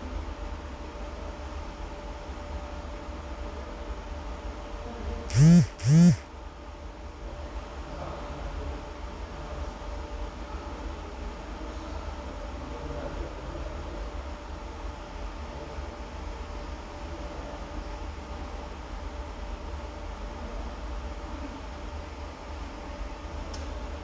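Steady low hum with hiss, broken about five seconds in by two short, loud pitched sounds half a second apart, each rising and then falling in pitch.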